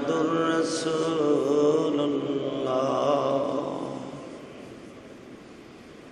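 A man's voice chanting a religious recitation in long, drawn-out melodic notes. It fades out about four and a half seconds in.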